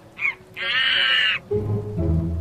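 An animal-cry sound effect over soft background music: a short cry followed by a longer, harsh pitched call. A low rumble begins near the end.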